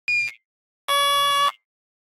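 Two steady electronic-sounding tones: a short high beep right at the start, then a lower, buzzy tone of about half a second from about a second in, both flat in pitch and cutting off sharply.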